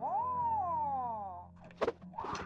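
A man's high-pitched, cat-like martial-arts battle cry: a quick rise, then a long falling wail that dies away about a second and a half in. A single sharp knock comes near the end.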